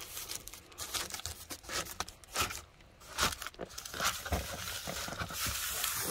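A fabric-covered Reflectix window cover, foil-faced bubble insulation, crinkling and rustling in irregular bursts as it is pushed and pressed into a van window by hand.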